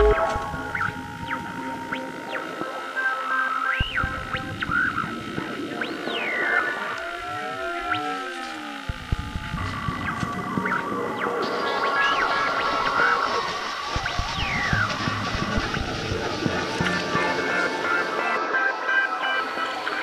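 Electronic music built from analog synthesizer sounds: a busy, chattering texture full of sliding pitch swoops, with a cluster of crossing rising and falling tones about seven to nine seconds in.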